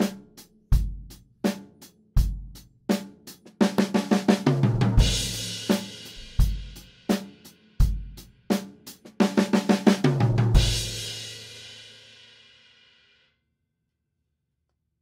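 Acoustic drum kit playing a straight-eighth beat on bass drum, snare and hi-hat, twice breaking into a one-beat fill: 16th notes on the snare rolling around the toms and landing on a crash cymbal. The second crash rings out and fades away near the end.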